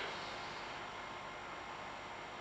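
Faint, steady background hiss: room tone with no distinct event.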